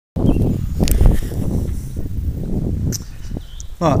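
Handheld-camera walking noise: an uneven low rumble of wind on the microphone with a few footsteps and clicks, starting suddenly just after the start.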